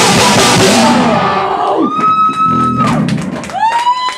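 Live metal band of electric bass, guitar and drums playing the last loud bars of a song, stopping about a second and a half in. Two long high held tones follow, one after the other.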